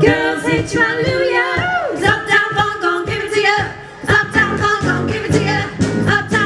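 Four female voices singing in close harmony with a live funk band, the drums keeping a steady beat under them; the band briefly drops back about four seconds in, then comes in fuller.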